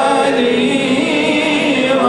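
A man singing a devotional chant into a microphone, holding long gliding notes, with other voices joining in. It is a chant of blessings on the Prophet (salawat).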